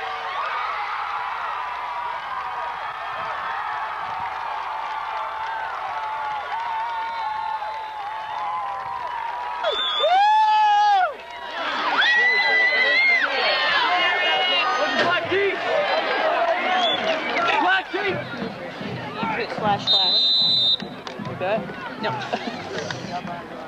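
Football crowd in the stands cheering and yelling during a play, a steady mass of voices that swells about halfway through, with loud, drawn-out shouts from people right beside the camera.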